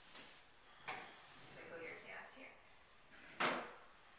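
Kitchen cabinet being opened and shut: a short knock about a second in, then a louder, longer knock with a brief ring-out about three and a half seconds in.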